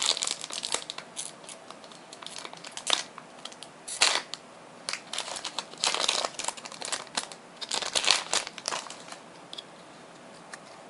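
Foil booster pack wrapper of Pokémon trading cards crinkling and being torn open, in irregular crackles with sharper rips about four, six and eight seconds in.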